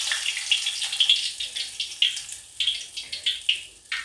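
A wet urad dal bhalla frying in hot oil, sizzling with irregular crackles and pops that thin out and fade toward the end. The spluttering comes from the water on the batter, used to keep it from sticking to the cloth, hitting the hot oil.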